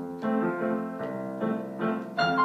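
Upright piano played four hands together with an electronic keyboard, starting a waltz: chords and melody notes struck on a steady, even beat.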